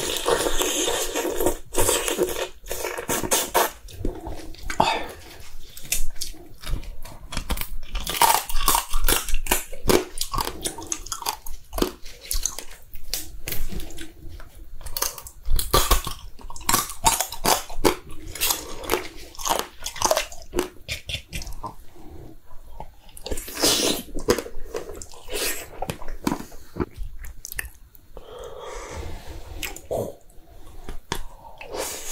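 Close-miked chewing of soy-sauce-marinated raw crab (ganjang gejang): a dense run of crisp crunches and cracks as the crab, shell included, is bitten and chewed.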